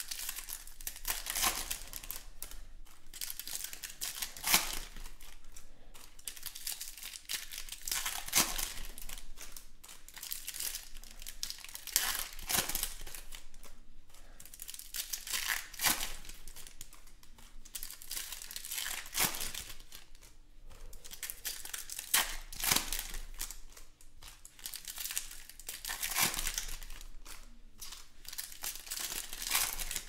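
Foil trading-card pack wrappers being torn open and crinkled by hand, sharp crackling bursts coming every three to four seconds.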